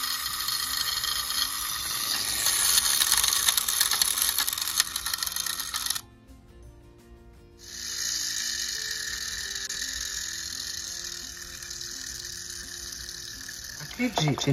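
Wind-up clockwork motor of a Glasslite Kit Kasinha miniature toy washing machine running, a steady high whirr as it turns the drum. It cuts out suddenly about six seconds in and starts again about a second and a half later.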